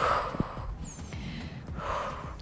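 A woman breathing hard in time with a standing twist exercise: one strong breath at the start and another near the end, exhaling as she pivots with her abdomen drawn in.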